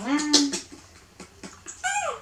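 A young macaque gives one short, high-pitched squeal that drops steeply in pitch, near the end.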